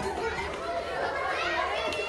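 Many voices chattering at once, a crowd of schoolchildren and adults talking over each other in a hallway.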